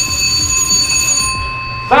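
Launch control centre alarm sounding a steady electronic tone, set off by the missile silo door opening. It cuts off near the end, over a low rumble.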